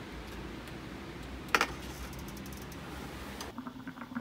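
Light clicks from a small object being fiddled with in the hands, with one sharper click about one and a half seconds in, over steady room tone. Near the end it drops to a quieter stretch of faint ticking.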